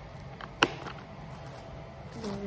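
A single sharp click just over half a second in, with a couple of fainter ticks around it, over a steady low room hum.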